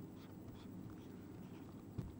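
Marker pen writing on a whiteboard: faint strokes over a low room hum, with a light tick near the end.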